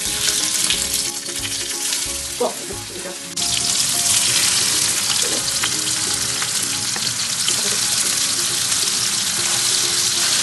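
Beef mince burger patties frying in hot vegetable oil in a frying pan: a loud, steady sizzle that starts suddenly as the meat goes in and jumps louder about three seconds later.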